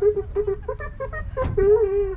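A person's high-pitched voice in a run of short, quick syllables, ending on one longer drawn-out sound near the end, over a steady low rumble.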